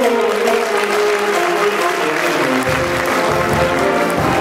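Audience applause breaks out mid-tune while a school jazz ensemble keeps playing sustained horn chords. A strong low bass and rhythm part comes back in about two and a half seconds in.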